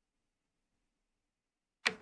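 Near silence for almost two seconds, broken near the end by a sudden sharp sound as a voice starts to speak.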